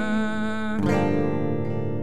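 A worship song played on a clean electric guitar with a sung note held out and fading, then a new guitar chord strummed about a second in and left ringing.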